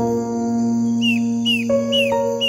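Calm instrumental music: a chord struck at the start and held, with a new note coming in near the end. From about a second in, a bird gives short downward-slurred chirps about twice a second over it.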